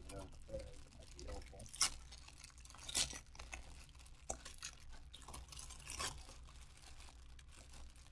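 Clear plastic bag of model-kit parts crinkling as it is handled and pulled open by hand, with scattered crackles and a few louder snaps about two, three and six seconds in, the bag not opening easily.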